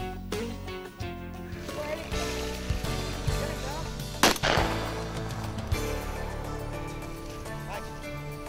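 One shotgun shot about four seconds in, over background music.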